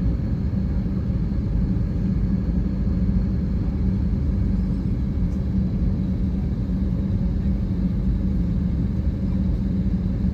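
Steady low rumble inside the cabin of an Airbus A321 as it taxis, with a constant low hum from its jet engines running at low power.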